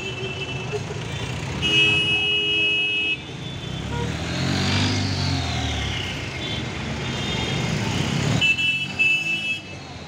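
Busy street traffic with vehicle horns honking three times, the first a toot of about a second and a half, and an engine rising and falling in pitch midway through.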